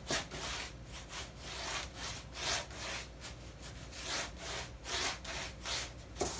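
Paintbrush bristles scrubbing back and forth over a carved, textured board, a wet brush blending still-wet brown glaze into the grain. The strokes are brisk and even, about two a second.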